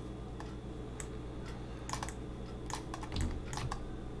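Irregular clicks and taps of a computer keyboard and mouse, about nine in all, over a steady low hum.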